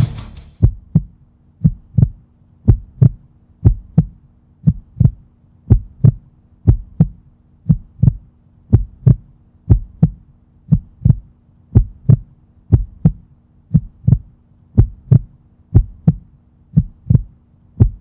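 Heartbeat sound effect: pairs of deep thumps, lub-dub, about one double beat a second at a steady pace, over a faint steady hum.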